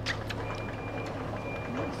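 An electronic warning beeper sounding two long, high, steady beeps of about half a second each, over a background hiss.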